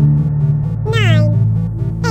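Electronic music bed with steady low synth notes. About a second in comes one cartoon sound effect: a high, pitched swoop gliding steeply downward, one of the effects that mark each count of the countdown.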